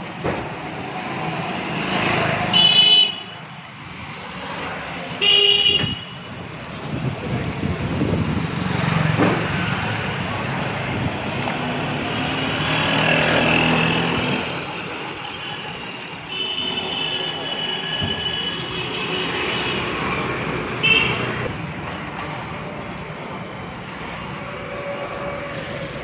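Busy street traffic with vehicle horns honking: two loud short honks in the first six seconds, then more honking later on over a steady traffic din.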